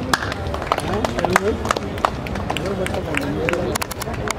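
Several people talking in the background at once, with scattered, irregular sharp clicks.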